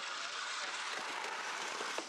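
Greyhound track's mechanical lure running along its rail toward the starting boxes: a steady rushing noise.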